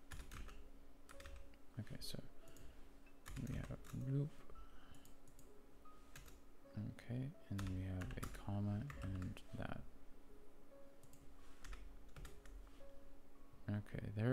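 Typing on a computer keyboard: scattered key clicks and short runs of keystrokes as code is edited. A man's voice makes a few indistinct sounds in the middle.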